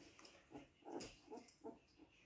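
Faint little grunts from Siberian husky puppies, four short sounds spaced a few tenths of a second apart.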